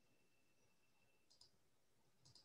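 Near silence on a video-call audio feed, with a couple of faint, quick clicks about a second and a half in.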